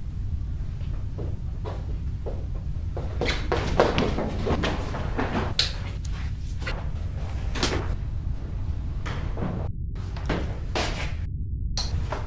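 A run of irregular knocks, bumps and rustles, the loudest about four seconds in, over a steady low hum.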